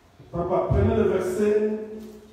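A man's voice giving one loud, drawn-out utterance, its pitch held steady for about a second and a half.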